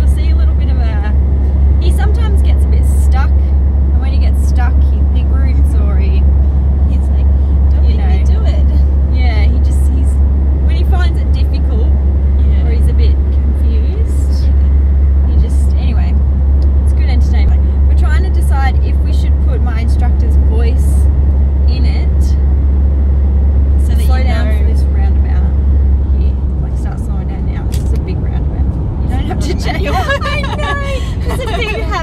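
Steady low road and engine drone inside the cabin of a moving car, easing a little near the end, with talking over it.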